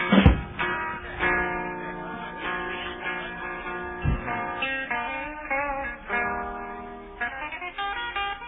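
Music led by a plucked guitar playing sustained notes, with a low thump twice, near the start and about halfway through.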